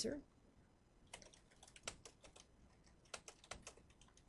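Faint computer keyboard typing: irregular key clicks starting about a second in, as a short phrase is typed.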